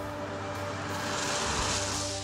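A Toyota RAV4 passing close by on a wet road, its tyre hiss swelling to a peak about a second and a half in and then fading, over steady background music.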